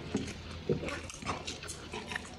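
A person eating noisily, stuffing noodles into his mouth by hand: irregular short mouth and breath noises between mouthfuls.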